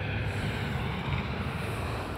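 Wind buffeting a phone's microphone outdoors: a steady, fluttering low rumble with a hiss above it.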